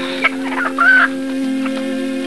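A chicken clucking and squawking a few times in the first second, over a steady held note in the film's background music.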